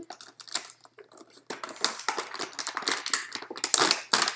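Cardboard product box being opened and a clear plastic blister tray slid out of it: a run of clicks, scrapes and crinkling, sparse at first and busier from about halfway, loudest just before the end.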